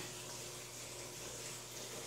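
Faint, steady sound of water running through the aquaponics system's pipes and tank.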